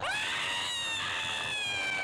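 A woman screaming: one long, high scream that rises sharply at the start and then slowly sinks in pitch.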